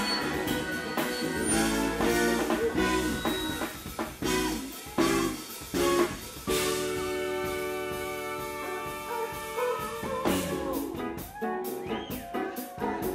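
Live funk and soul band playing, with electric guitar, horn section, keyboards and drum kit. Sharp ensemble hits come about five and six seconds in, then a long held chord rings for a few seconds before the groove starts again near the end.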